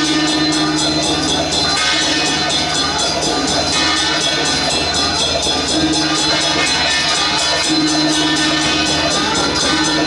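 A Taiwanese 開路鼓 (path-clearing drum) ensemble playing at full volume: a large barrel drum beaten fast with a steady driving beat, with gong and cymbals crashing along.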